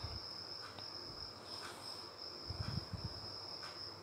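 A faint, steady high-pitched tone hums in the background, with a few soft low bumps about two and a half seconds in.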